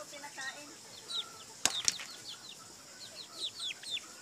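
Chickens moving about, with a quick burst of wing flaps a little before the middle, over repeated short, high, falling chirps and a few short calls near the start.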